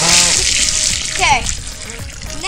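Garden hose water rushing and spraying through a bunch of water balloons as they fill on a multi-straw filler, a loud hiss for about the first second that then falls away.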